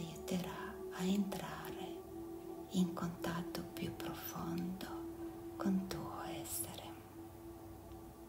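A hushed whispering voice with no clear words, in short fragments with sharp hissy sounds, over a steady low ambient music drone; the whispering stops about seven seconds in, leaving the drone.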